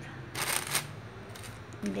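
A thin plastic bag rustling in one brief burst, about half a second long, as raw prawns are packed into it.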